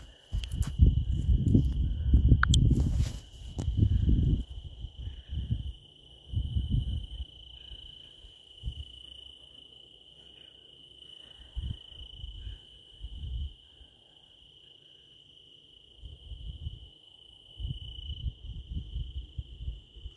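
Insects trilling in one steady, high-pitched, unbroken note. Low rumbles and thumps on the microphone come and go, loudest in the first four seconds.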